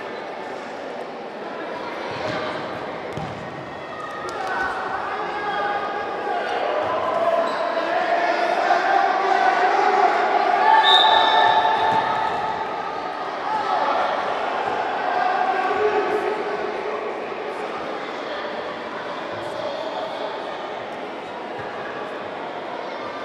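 A futsal ball being kicked and bouncing on a sports hall's wooden floor, under a steady mix of indistinct shouting from players and spectators that echoes in the hall and is loudest about halfway through.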